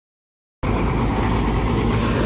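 Silence for about half a second, then a bus's diesel engine idling steadily.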